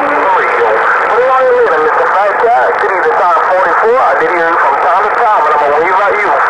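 A distant station's voice coming through a President HR2510 radio's speaker: thin and hard to make out, cut to a narrow band and laid over steady static hiss. A steady low hum cuts off just after the start.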